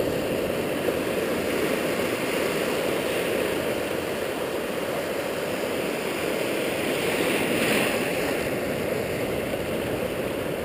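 Ocean surf washing through the shallows in a steady rush, swelling a little about seven to eight seconds in as a wave comes through.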